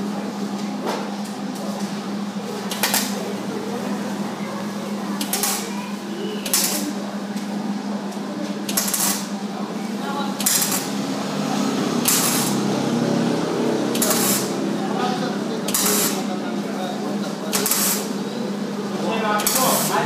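Arc welding on a steel bench stand: short bursts of crackling arc come roughly every one and a half to two seconds, over a steady low hum.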